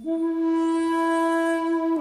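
Solo shakuhachi, the Japanese end-blown bamboo flute, sounding one long held note with breath audible in the tone. The note comes in at the start, holds steady for nearly two seconds, and bends down into a slightly lower note at the very end.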